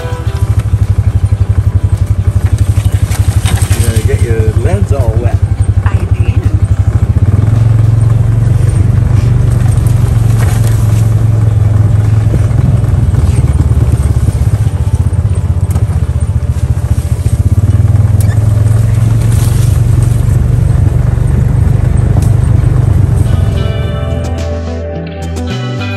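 Engine of an open off-road side-by-side running steadily as it drives along a wet forest trail, a loud, low, rapidly pulsing drone.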